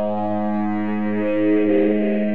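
Distorted electric guitar sustaining a single low note, steady and held, with a slight waver near the end.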